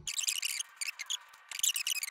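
Rustling and scraping of thin sheet-metal spinner petals being handled, in two short spells, one at the start and one near the end, with a few faint clicks between.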